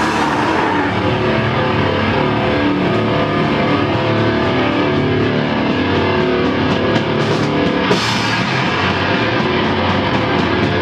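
A rock band playing loud and live: distorted electric guitars, bass and a drum kit.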